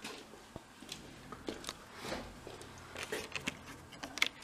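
A few soft, scattered clicks and rustles of close handling noise over faint low room tone, with no plucked notes.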